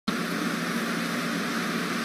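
Steady ambient noise of a large, crowded gymnasium hall: an even hiss with a low hum, typical of electric fans running over the hum of a big seated crowd.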